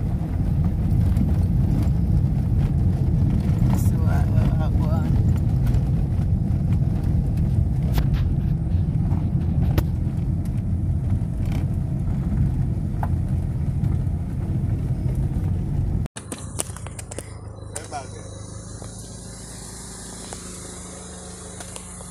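A loud, steady low rumble with no clear rhythm that cuts off suddenly about sixteen seconds in. It gives way to a much quieter, high, even chirring of night insects.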